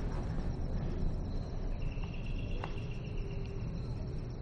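Crickets chirping steadily in night ambience over a low background rumble, with a light click about two and a half seconds in.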